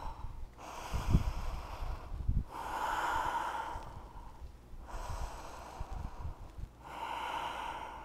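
A woman breathing slowly and audibly while holding a balance pose, drawn-out inhales and exhales of roughly two seconds each, about four in all. Two soft low thumps come about one and two and a half seconds in.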